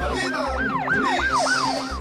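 Siren sound effect in a police-news title jingle: a fast yelp rising and falling about three times a second over an electronic music bed with a steady kick-drum beat. A whooshing sweep passes through the middle, and the siren stops at the end while the music carries on.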